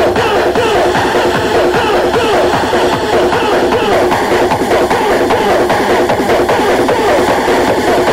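Hardcore rave music from a DJ set: a fast, dense electronic beat with synth riffs, loud and unbroken.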